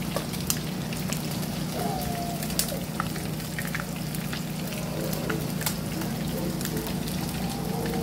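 Whole fish pan-frying in hot oil, sizzling steadily with frequent small crackles and pops over a steady low hum.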